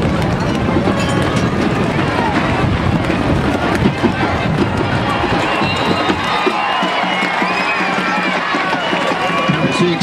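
Stadium crowd at a high school football game: many voices talking and shouting at once, with music playing underneath.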